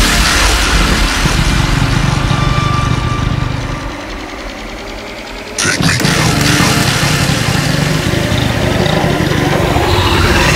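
Riddim dubstep track playing, a dense mix with heavy bass. It thins out and quietens about four seconds in, then the full mix comes back suddenly just before six seconds.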